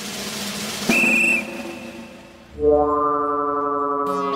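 Soundtrack effects and score: a rising whoosh, then a short, shrill whistle about a second in, then a low hit and a sustained music chord starting midway through.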